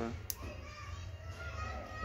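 A single short click about a third of a second in, over a low steady hum.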